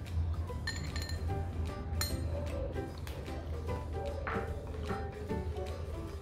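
Background music, with a few light clinks of a metal spoon against glass while milk is spooned into a glass jar.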